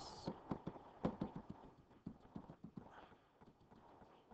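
Rapid, irregular light clicks, several a second, thinning out after about three seconds: a computer mouse clicking repeatedly on a calculator emulator's arrow key to step the zoom-box cursor.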